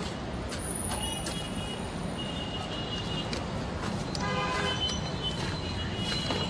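Background road traffic: a steady low rumble of passing vehicles, with faint distant horn toots now and then.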